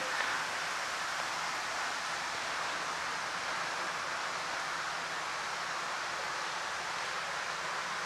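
Steady, even rushing hiss of background noise, unchanging throughout, with no distinct events.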